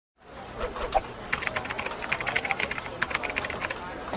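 Computer keyboard typing: a quick, irregular run of keystroke clicks from just after the first second until shortly before the end, with a single louder thump about a second in.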